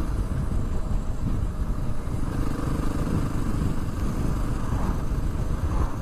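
Honda XR650R's single-cylinder four-stroke engine running steadily, heard through a dense low rumble.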